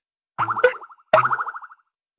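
Two short buzzy electronic tones, each about half a second long, the second starting about a second in.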